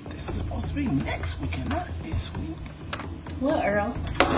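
Scattered light clicks and taps, irregularly spaced, over a steady low hum, with a faint low voice in the first half.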